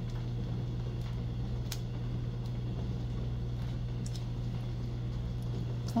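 A steady low background hum with a few faint, light clicks scattered through it.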